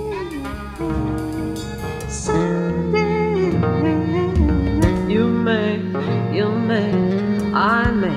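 Instrumental ensemble music: a trumpet melody with bending, sliding notes over piano, bass and guitar accompaniment.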